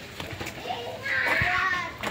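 A child's high voice calling out in the background for about a second, starting about halfway in.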